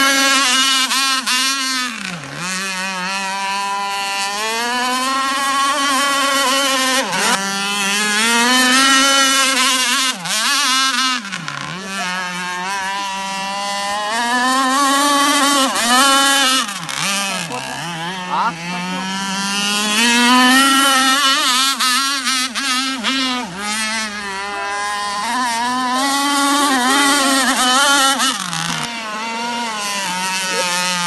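A two-stroke chainsaw engine in an RC powerboat runs at high speed. Its pitch swings up and down over and over, and drops sharply for a moment every few seconds.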